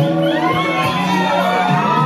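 Audience whooping and cheering, with many high shouts rising and falling, over music.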